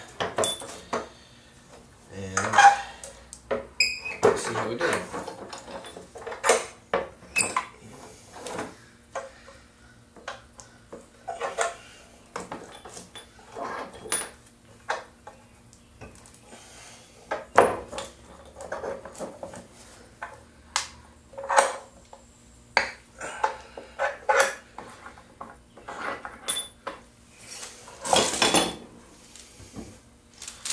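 Pipe clamps being loosened and taken off a glued-up cutting board: irregular metallic clinks and clanks of the clamp jaws and iron pipes, about one every second or so.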